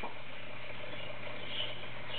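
A steady low hum of room background, with a faint high squeak about one and a half seconds in.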